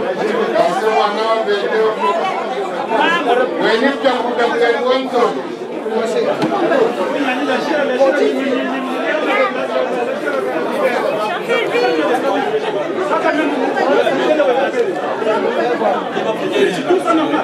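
Many people talking over one another in a large hall: indistinct crowd chatter with no single voice standing out.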